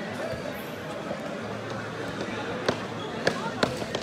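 Three sharp smacks of a volleyball in the second half, the last two close together, over steady crowd chatter.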